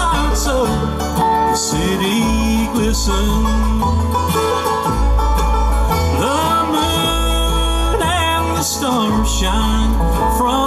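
Live bluegrass band playing an instrumental break in a slow song, with banjo, mandolin, acoustic guitar, upright bass and dobro. The bass notes step every second or so, and there are some sliding notes near the end.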